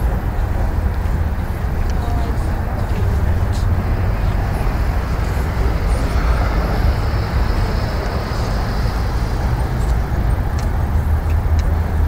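Steady low rumbling noise with a fainter hiss above it, even throughout, with no distinct events standing out.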